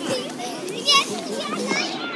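Several children's voices chattering and calling over one another.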